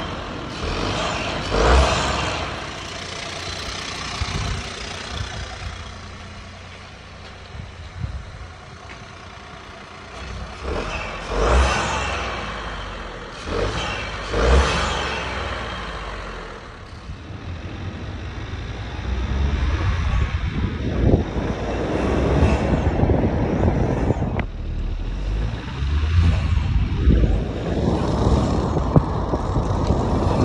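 Honda Civic 1.0-litre turbocharged three-cylinder engine breathing through a K&N high-flow panel air filter. It is revved in short blips several times in the first half, then runs louder under load with rising engine notes as the car pulls away and accelerates.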